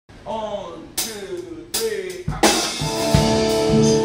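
Live jazz band on stage: a couple of sharp drum and cymbal hits, then a loud hit about halfway through as the full band comes in together on a held chord with the drum kit.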